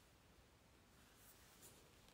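Faint scratching of a dark pencil shading on rough drawing paper, with two short strokes in the second half over near silence.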